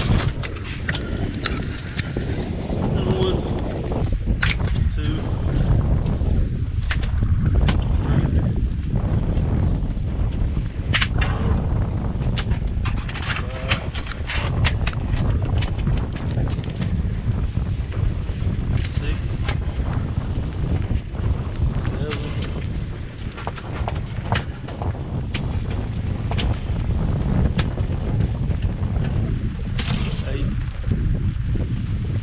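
Wind buffeting the microphone in a steady low rumble, with many short knocks and slaps scattered through it as catfish are dropped from the live well onto the boat's floor and flop about.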